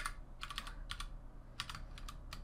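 Typing on a computer keyboard: several short runs of key clicks with brief pauses between them.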